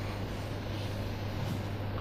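Steady low hum with faint room noise and no speech.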